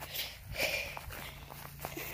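Quiet footsteps on grass.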